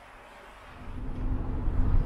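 Low engine and road rumble inside the cab of a Winnebago Revel 4x4 camper van. It is faint at first, comes in about half a second in and swells louder to the end.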